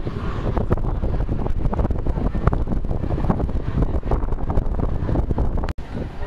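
Wind buffeting a phone microphone outdoors by open water: a loud, gusty low rumble. It drops out for an instant near the end.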